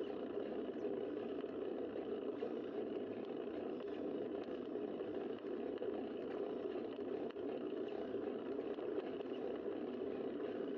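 Steady rushing wind and road noise picked up by a bicycle-mounted camera while riding along a paved road.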